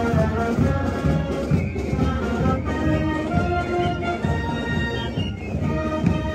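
Marching band playing as it parades, with saxophones, clarinets and sousaphones over drums.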